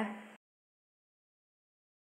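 The tail of a woman's spoken word fading out in the first moment, then complete digital silence.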